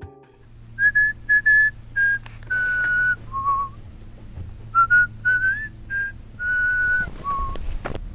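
A person whistling a tune of about a dozen clear notes, some short and some held, with one note sliding upward about halfway through.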